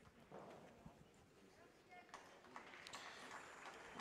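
Near silence: faint background of a large sports hall, with a few soft distant clicks and knocks and faint far-off voices.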